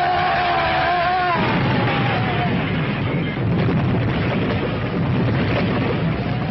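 A wavering, slightly falling scream for about the first second and a half, then a long, loud crash-and-explosion rumble as a car goes over a cliff and bursts into flames: a film sound effect.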